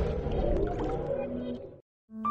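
Tail of an electronic channel-ident jingle: a dense synthesized swell that fades out, falling to silence near the end.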